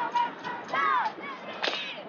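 Teenage girls' voices in a tight huddle: a high shout falling in pitch about a second in, then a single sharp crack near the end, over the steady noise of a busy street crowd.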